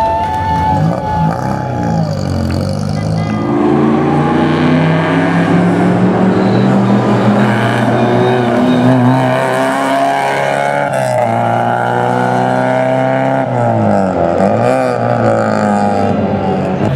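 Rally car engine revving hard through the gears, its pitch climbing, dropping at each gear change and climbing again, with a sharp drop and recovery near the end.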